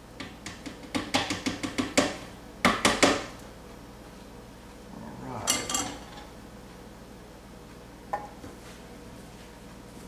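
A spoon tapping and knocking against a food processor bowl as drained canned corn is scraped into it: a quick run of light taps, then a few louder knocks, and a brief rattle about five and a half seconds in.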